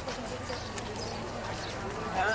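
Footsteps of several people walking on a paved, gravelly path: shoes tapping and scuffing, with a faint murmur of voices behind them.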